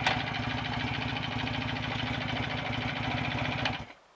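BSA A65 650 cc parallel-twin engine on a hot, slow tickover, running evenly with a sharp click right at the start, then stalled on purpose: it dies suddenly near the end.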